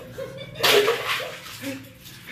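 Ice water poured from a plastic dipper splashing over a man's shoulder into an ice-cube bath, one short splash just over half a second in that fades quickly.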